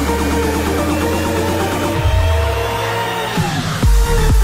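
Electronic dance music from a DJ set in a build: a synth line glides upward in pitch while the deep bass drops away about three seconds in. A heavy kick lands right at the end as the beat comes back in.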